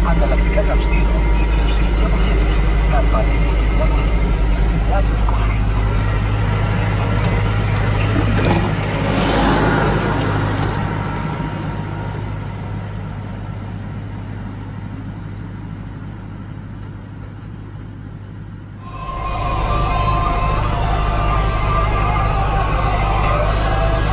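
Hürlimann XF 90.4 tractor's diesel engine running steadily with a low drone, easing off and growing quieter over the middle stretch. About three seconds before the end, music comes in abruptly.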